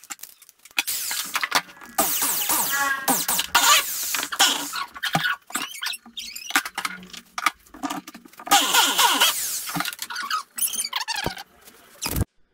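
Electric drill run in short bursts, its bit squealing and grinding as it widens the fuel-tap hole in a motorcycle fuel tank.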